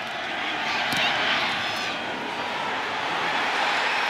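Stadium crowd noise, a dense steady roar of many voices that swells slightly as a field goal is kicked, with a brief knock about a second in.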